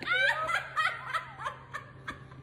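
High-pitched laughter: a loud burst at the start that breaks into a quick run of short bursts, trailing off.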